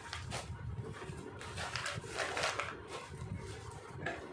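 Woven plastic rice sack rustling and crinkling in irregular bursts as it is handled and smoothed flat on a table.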